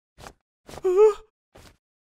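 A voice giving a single puzzled, questioning "Huh?" about a second in, its pitch rising and then dipping, with faint short noises just before and after it.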